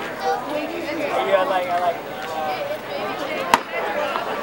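Chatter of spectators near the backstop, with one sharp pop about three and a half seconds in as the pitch reaches the plate: the baseball smacking into the catcher's mitt.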